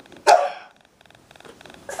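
A toddler's single short, sharp shout of protest, like the 'no's just before it, about a third of a second in.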